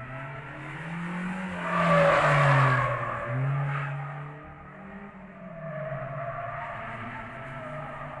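Animated sound effect of a Honda Civic EG6 racing through mountain-road corners. The engine revs rise and fall, with a loud rush of noise about two seconds in.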